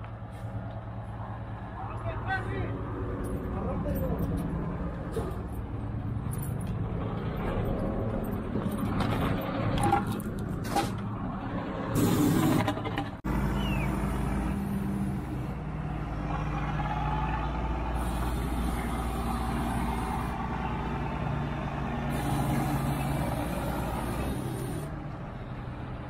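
Heavy diesel engines of large forklifts running steadily while they hold up a tracked Caterpillar milling machine. There is a short burst of loud air hiss about twelve seconds in.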